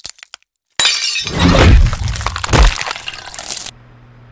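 Glass-shattering sound effect: a sudden loud crash of breaking glass about a second in, with a heavy low thud under it, trailing off over the next few seconds.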